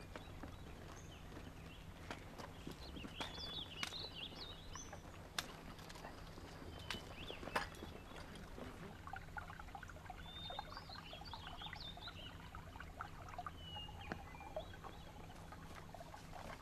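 Faint outdoor ambience: scattered short bird chirps, with footsteps and a few sharp knocks from a file of soldiers walking along a rocky path, over a steady low rumble.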